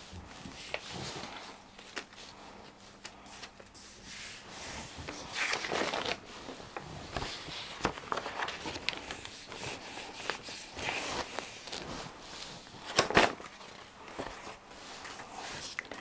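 Sheets of paper rustling and crinkling as they are rubbed down and peeled off a gel printing plate, with a sharper, louder crackle about 13 seconds in.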